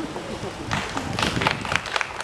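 A short pause in a man's speech at a microphone, filled with a quick series of small clicks and light rustles from about a second in.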